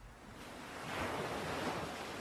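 A whooshing swell of noise that grows louder over about the first second and then holds steady, with no tone or beat in it.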